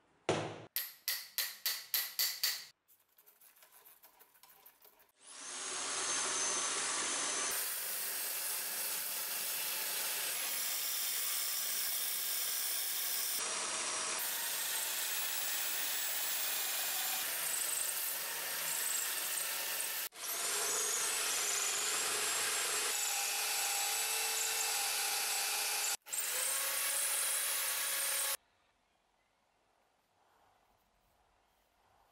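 A quick run of about ten sharp knocks. Then an electric drill, set up as a lathe, spins the wooden chisel handle while it is worked by hand. It makes a steady running noise that breaks off and restarts a few times and cuts off near the end.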